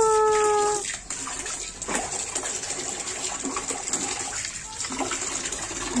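Water running and splashing as a French bulldog is washed by hand in a small tub, a steady wash of noise with small scattered splashes.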